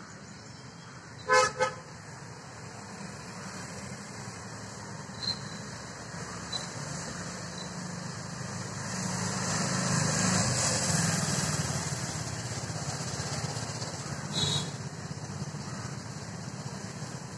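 A vehicle horn toots twice in quick succession about a second in. Traffic noise then swells and fades as a vehicle passes around the middle.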